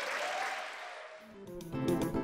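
Audience applause fading away, then strummed guitar music starts about one and a half seconds in.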